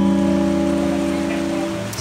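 A held chord from acoustic guitar and cello rings on and slowly fades between sung lines, over a steady hiss of rain. The next notes are struck right at the end.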